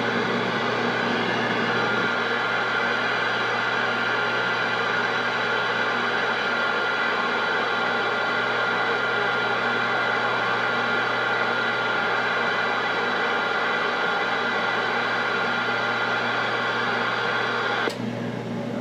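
Steady static hiss from a Galaxy CB radio's receiver while the operator is off the mic, with a faint steady whistle and a low hum in it. It cuts off suddenly at the end.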